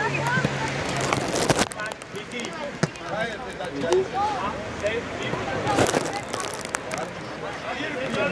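Players and spectators calling out and shouting across an outdoor football pitch, with two brief rushes of noise, about a second in and near six seconds in.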